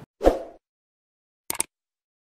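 Outro sound effects for a subscribe-button animation: a short pop near the start, then a quick double mouse-click about a second and a half in.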